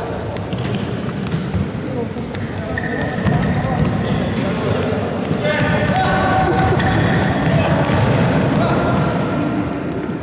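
Indoor futsal game: players' shouts and calls ringing in a sports hall over the thud of the ball and footfalls on the wooden floor, the shouting growing busier about halfway through.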